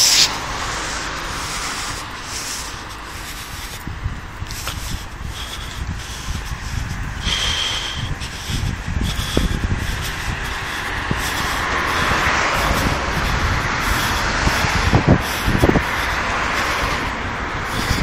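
Road traffic going by, with one vehicle growing louder and fading about twelve seconds in. Irregular rumbling and rubbing on the handheld phone's microphone runs underneath.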